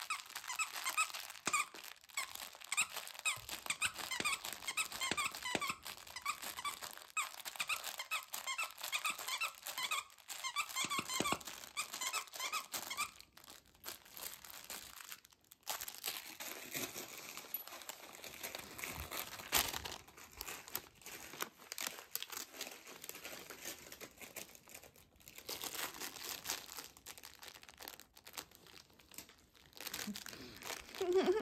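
Squeaker in a plush dog toy squeaking rapidly over and over as a dog chews it, most densely in the first half. The later part is mostly rustling and crinkling.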